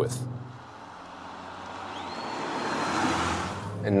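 Road and wind noise inside a moving car's cabin, swelling steadily louder over a few seconds, with a faint thin high whine for about a second in the middle.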